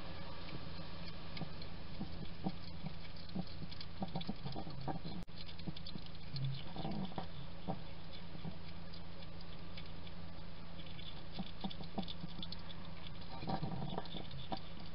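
A hedgehog chewing and crunching dry food from a ceramic bowl: many small irregular crunches and clicks over a steady low hum, with a brief dropout about five seconds in.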